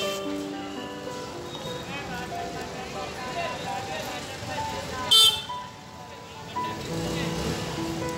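Busy street-market ambience: voices and music over traffic, with a short, loud horn beep about five seconds in.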